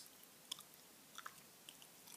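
Faint, close-miked bubble gum chewing: a few soft, quick mouth clicks over near silence.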